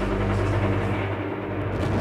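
Low rumble of battle sound, artillery-like booms, as the held low notes of background music die away over the first second; a sharper bang comes near the end.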